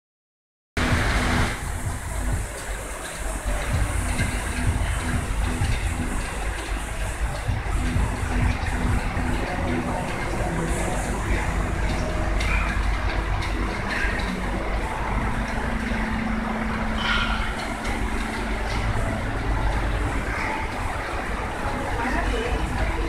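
A steady low rumble of background noise with faint, indistinct voices in it.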